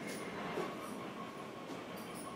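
Steady background room noise: an even hiss and hum with faint steady high tones and no speech.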